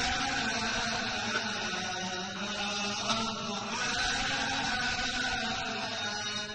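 Many men's voices chanting together in unison, blending into a steady drone of held pitches.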